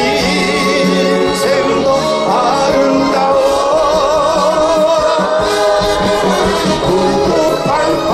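A man singing a song into a microphone, accompanied by a live orchestra with brass and strings; his held notes waver with vibrato.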